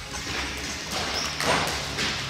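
Jump ropes swishing and tapping, with light thuds of footfalls on balance beams, in a large echoing gym; the loudest swish comes about one and a half seconds in.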